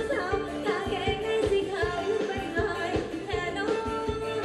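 Live band playing Thai ramwong dance music: a singer over a steady drum beat.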